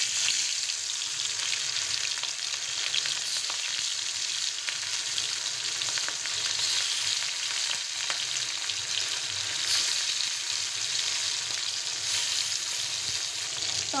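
Turmeric-rubbed hilsa fish steaks frying in hot oil in a karahi: a steady, dense sizzle with many small crackles and pops.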